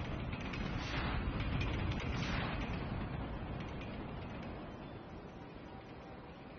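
Game-show sound effects for the Crazy Time bonus round's animated intro: a noisy, mechanical-sounding rush that swells twice in the first half and then fades away.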